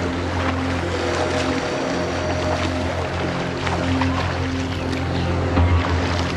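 Soundtrack music with long held notes, over the splashing of a swimmer doing overarm strokes in a lake.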